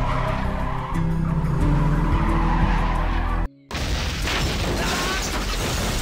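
Car engine and tyre noise from a film car scene, mixed with music. The engine runs steadily for the first three and a half seconds, then the sound cuts out briefly. It comes back as a steady rush of noise, like tyres skidding in a drift.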